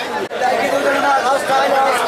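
People talking over the chatter of a busy market crowd, with a brief dropout about a third of a second in.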